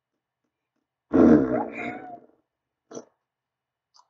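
A person making a silly growly vocal noise, starting about a second in and lasting just over a second, followed by a short voiced burst near three seconds.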